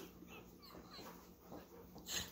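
Near silence with faint sounds from two dogs at play, tugging on a plush toy, including a few brief, faint high whines a little under a second in.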